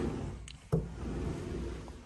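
An interior pocket door slid along its track: a low rolling rumble with a sharp knock under a second in.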